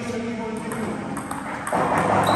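Table tennis ball clicking off paddles and table in a doubles rally: a quick run of light clicks, a quarter to half a second apart, through the second half.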